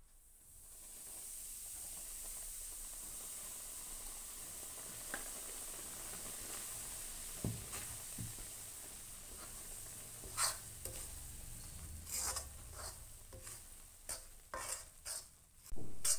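Wheat flour sizzling as it roasts in hot desi ghee in a steel kadhai, a steady hiss that builds over the first second or two. A steel spoon stirs through the flour, scraping the pan in short strokes that come more often in the second half.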